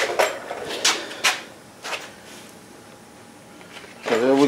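Four short scuffing sounds in the first two seconds, then quiet room background.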